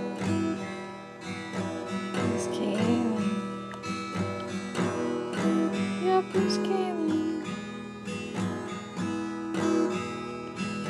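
Acoustic guitar strummed in the background, a steady run of chords about one or two strums a second.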